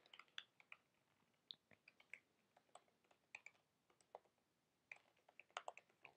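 Faint, irregular keystrokes on a computer keyboard as code is typed, with a quicker run of keys near the end.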